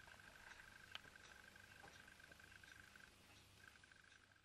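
Near silence: a faint, steady high-pitched tone with a slight flutter, broken off for about half a second near the end, with a few faint ticks.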